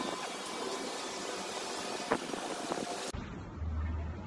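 Outdoor background noise: a steady hiss with faint tones and a sharp click about two seconds in. About three seconds in it cuts to a duller recording with a low rumble.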